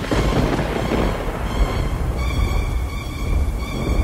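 Thunder: a sudden clap at the start followed by a long rolling rumble, over a music bed.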